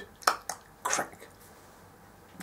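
Three short, sharp clicks within the first second, the last the loudest, made by a person acting out a ratchet nutcracker cracking a nut.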